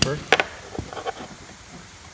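Spring-loaded battery-charger alligator clamp clicking as it is worked onto an ATV battery terminal: one sharp click about a third of a second in, then a fainter tap.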